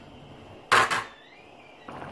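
A metal serving spoon clatters sharply against the rim of a metal cooking pot about three-quarters of a second in, followed by a short fading ring.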